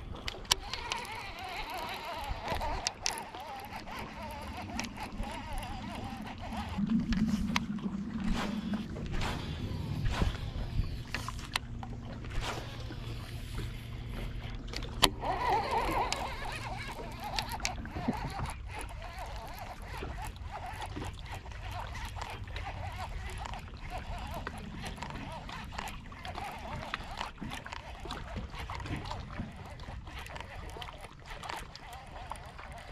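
Casting and reeling from the front deck of a bass boat: baitcasting reel and rod handling clicks and knocks over lapping water. A steady low hum from the bow-mounted electric trolling motor runs through the middle stretch and stops about two-thirds of the way in.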